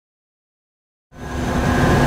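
Silence, then about a second in a steady clean-room hum fades in and grows louder: air handling and equipment noise with a few constant tones running through it.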